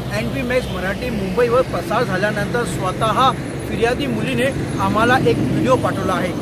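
A man speaking, with steady road traffic running underneath.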